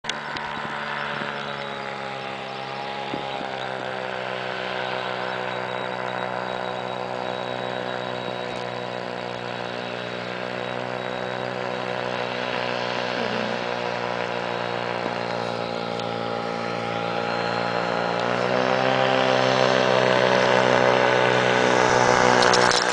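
Quicksilver MX ultralight's two-stroke engine and propeller running in flight as the aircraft approaches. The note rises slightly and grows louder over the last few seconds as it nears.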